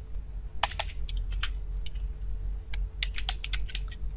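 Computer keyboard keys clicking as a short word is typed, in two quick runs of keystrokes with a pause of about a second between them.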